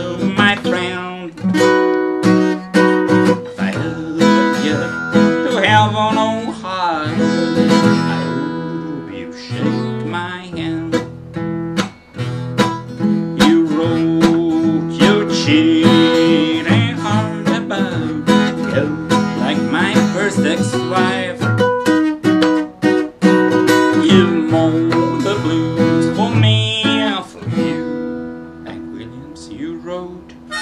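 Mahogany Harley Benton acoustic guitar strummed steadily.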